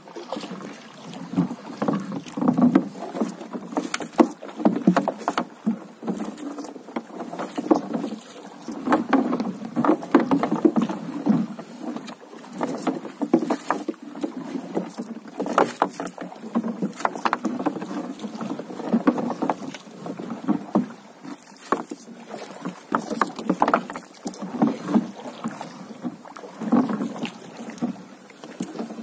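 Water sloshing and slapping against a small boat's hull, with irregular knocks and rustling as a floating gillnet and its floats are fed out over the gunwale by hand.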